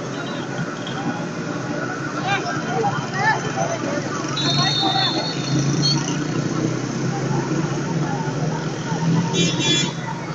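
Football-pitch ambience: scattered distant shouts and voices of players over a steady hum of road traffic. A brief high-pitched tone sounds about four and a half seconds in, and another comes near the end.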